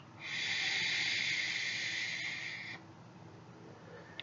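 Someone taking a vape on a sub-ohm tank: a steady airy hiss that lasts about two and a half seconds, then stops.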